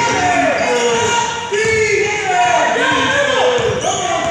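A basketball being dribbled on a hardwood gym floor during a game, with players and spectators shouting throughout.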